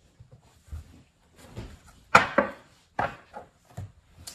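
Handling noise of tarot cards being picked up and set down on a table: a handful of short knocks and rustles, the loudest about two seconds in.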